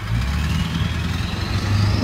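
A motor vehicle's engine running close by as a steady low hum that rises a little in pitch just past the middle, with a faint whine climbing above it.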